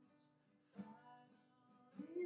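Acoustic guitar, soft and faint, in a pause between sung lines. Notes ring on quietly, with one light strum a little under a second in.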